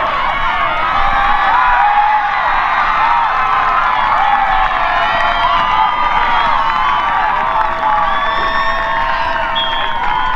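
Football spectators cheering and yelling, many voices shouting over one another while a ball carrier breaks away on a long run, with some longer held yells near the end.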